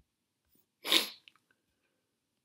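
One sharp, loud burst of breath from a person about a second in, rising quickly and dying away over a fraction of a second, like a sneeze.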